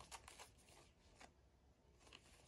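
Faint flicking and rustling of a stack of cards being leafed through by hand: a few soft flicks in the first second and one more a little past the middle.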